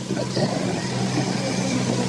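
A steady low hum with faint, indistinct speech beneath it.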